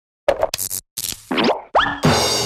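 Cartoon sound effects of an animated logo sting: a quick run of short pops and springy boings, the last two sliding upward in pitch.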